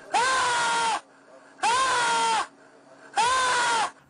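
A man making loud wordless wailing cries, three long calls of just under a second each, at a steady pitch that drops off at the end of each.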